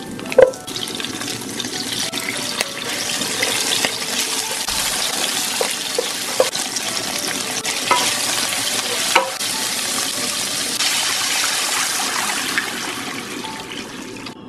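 Hotpot soup base and chili bean paste sizzling in hot oil in a nonstick wok, stirred with a wooden spatula that clacks against the pan now and then. A loud clack comes about half a second in, and the sizzle is steady from about a second in.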